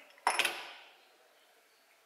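A single sharp metallic clank about a quarter of a second in, ringing briefly and dying away within about a second: a steel lathe chuck key being set down on the metal lathe.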